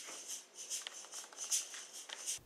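A hand-percussion shaker being shaken in time, giving short, regular hissing strokes about two to three a second.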